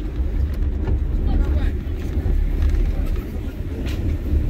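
Car driving slowly along an unpaved road, heard from inside the cabin as a steady low rumble of engine and tyres.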